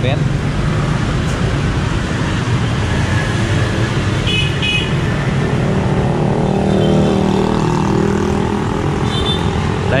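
Motorbike and car traffic running steadily along a busy city street. Two short horn toots come about four and a half seconds in, and a fainter one near the end. An engine grows louder and fades as a vehicle passes close by around the middle.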